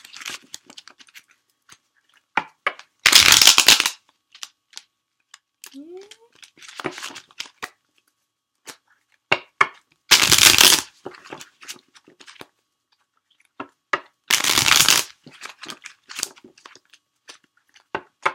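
A deck of tarot cards being shuffled by hand: three loud riffling bursts, each under a second, with soft taps and flicks of the cards between them.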